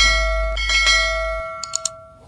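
Bell chime sound effect from a subscribe-button animation, rung twice about three-quarters of a second apart and ringing on, followed by three quick clicks near the end.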